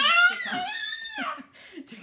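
A baby letting out a loud, high-pitched squeal that lasts about a second and a half, followed by fainter voice sounds.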